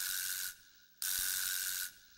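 Two bursts of rough, hissing rattle, each just under a second long, a short gap apart.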